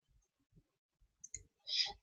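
Two faint, quick computer mouse clicks about a second and a quarter in, then a breath as speech starts again near the end.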